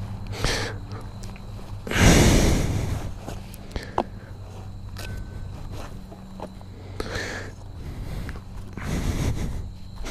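A man breathing heavily, with loud exhales or sighs about two seconds in and again near the end, as he shifts on and gets off a parked motorcycle. A few light clicks and rustles, and a steady low hum, run underneath.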